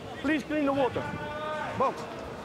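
Raised voices calling out in a boxing arena, with one long drawn-out call about a second in and a short rising one near the end, over the hall's steady background noise.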